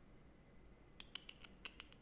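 Faint computer-keyboard typing: a quick run of about six keystrokes about a second in, over quiet room tone.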